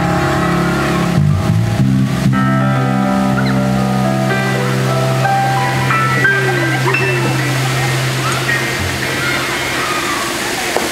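Live band music: a sustained chord that shifts twice in the first two seconds, then rings out and fades by about nine seconds in, with crowd voices coming up over it near the end.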